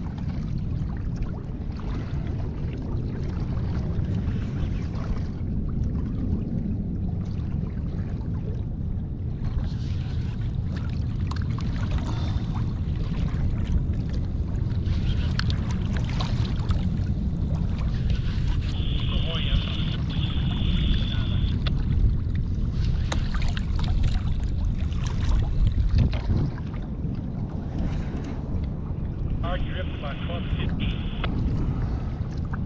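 Wind on the microphone and water lapping against the hull of a small skiff at sea, with scattered light clicks and knocks. Twice, a thin, high, steady whine lasts about two seconds: once a little past the middle and again near the end.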